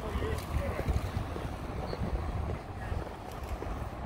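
Wind buffeting the microphone in a steady rumble, with faint footsteps on boardwalk planks under it.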